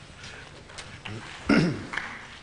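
A man's short, low vocal sound falling in pitch, about one and a half seconds in, a brief chuckle-like grunt from the commentary.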